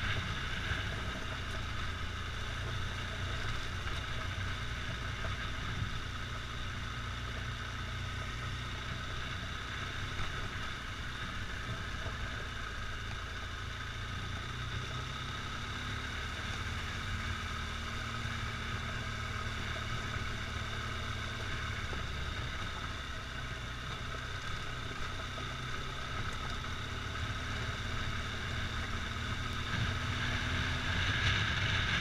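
Motorcycle engine running steadily at low speed, with wind noise on the mounted camera's microphone. A faint steady engine note comes through from about halfway in.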